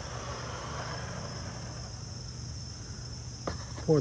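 A steady high-pitched chorus of insects, with a low hum beneath it and a light knock near the end.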